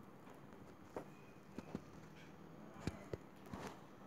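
Faint, irregular taps, about six in four seconds and the loudest near the three-second mark, from an ebru marbling brush loaded with paint being tapped against the hand to sprinkle drops onto the marbling size.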